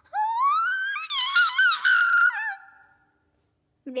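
A boy's high-pitched scream, one long "ah" that climbs in pitch and then wavers up and down for about three seconds. Near the end a lower, wobbling "ah" starts.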